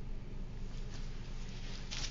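Soft rustling and handling noises of a cloth garment being picked up and held out, strongest near the end, over a steady low room hum.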